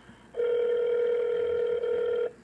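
Telephone ringing tone heard through a phone's speaker while a call is being transferred: one steady ring about two seconds long, starting a moment in.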